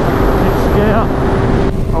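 Kawasaki H2 motorcycle cruising steadily in sixth gear at about 4,000 rpm, with a constant engine note under loud wind rush on the microphone.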